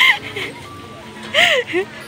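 Tinny, jingle-like children's music from an odong-odong kiddie ride's speaker, with short rising-and-falling pitched calls about every second and a half over faint steady tones.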